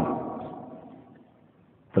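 A short pause in a man's speech: the echo of his voice dies away over about a second, then near silence.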